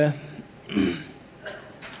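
A man's single short cough about a second in.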